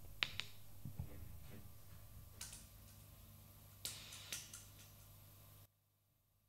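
Faint low hum with a handful of short, irregular clicks and taps, then the sound cuts off abruptly to near silence near the end.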